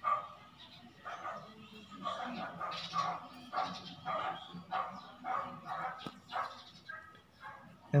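A dog barking over and over in the background, short barks at roughly two a second, with a single sharp click about six seconds in.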